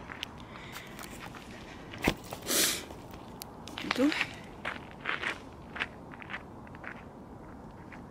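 A camera being set down on the ground, with a sharp knock and rustling of handling, then footsteps in toe shoes crunching away across a gravelly path, about a step every half second.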